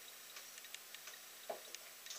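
Quiet room with faint, irregular small clicks and ticks, and one soft low blip about one and a half seconds in.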